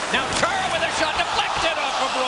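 Ice hockey game sound: a steady arena crowd din with sharp clacks of sticks and puck scattered through it, under play-by-play commentary.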